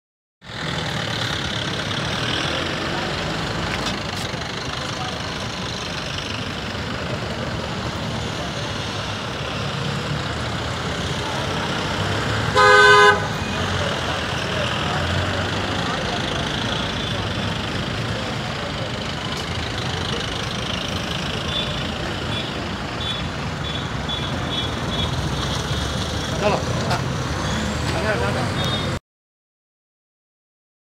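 Street noise with voices of people talking and traffic in the background, and one loud vehicle horn blast lasting under a second about halfway through.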